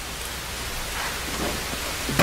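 Steady rain falling, an even hiss with no distinct drops standing out.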